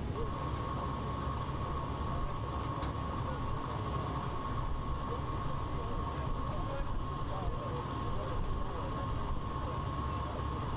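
Boat engine running steadily: a continuous low drone with a steady whine above it.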